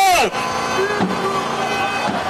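A man's loud amplified shout ending just after the start, followed by the steady noise of a large outdoor crowd with scattered faint voices.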